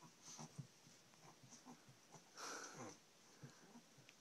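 Faint, short breathy sounds from a chihuahua as she humps a plush toy, with a slightly longer one about halfway through.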